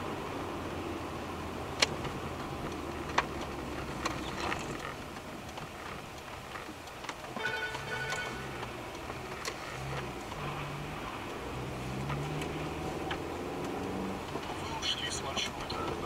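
Car cabin noise picked up by a dashcam while driving: a steady engine and road hum, with two sharp clicks a couple of seconds in and a brief run of high tones about halfway through.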